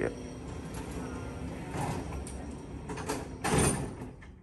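Elevator's two-panel sliding doors closing, with a louder knock as they shut near the end.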